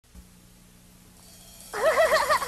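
Faint hum and hiss, then near the end a loud, warbling monkey-like call whose pitch wobbles quickly up and down.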